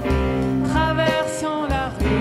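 Live band music in an instrumental break: a trombone plays a melodic line over piano and bass, sliding down in pitch near the end.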